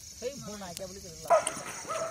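People's voices, quiet at first and louder from about a second and a half in.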